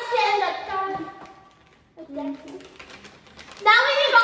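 A girl's voice calling out loudly in drawn-out sounds the speech recogniser could not make into words, once at the start and again near the end, with a short lower voice in between.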